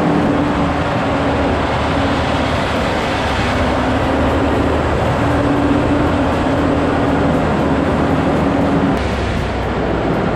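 Western Star tri-axle dump truck's diesel engine running as the truck moves slowly across a gravel and asphalt site, heard through the open cab window. The engine note holds steady and shifts pitch in small steps a few times, with a deeper rumble coming in near the end.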